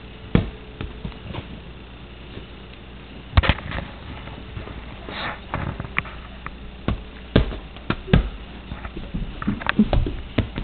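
Irregular soft knocks and rustles of a baby handling a soft toy ball, with the loudest cluster about three and a half seconds in.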